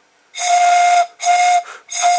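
A drinking-straw pipe stopped at the bottom with Blu Tack, blown across its open top: three breathy, flute-like notes at the same steady pitch, each well under a second long. The clear note shows that the Blu Tack plug is airtight.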